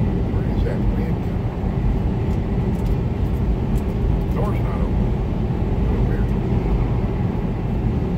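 Steady drone of a semi truck running at highway speed, its diesel engine and tyre noise heard from inside the cab.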